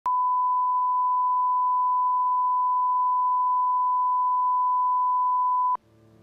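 Videotape line-up tone, the standard 1 kHz reference tone that plays over colour bars at the head of a tape: one steady, loud pure tone that cuts off suddenly near the end.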